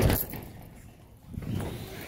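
A person jumping and landing on a painted 24-gauge galvalume corrugated metal roof: one loud thump right at the start that dies away over about half a second, then a fainter low sound about a second and a half in. The panels hold the weight.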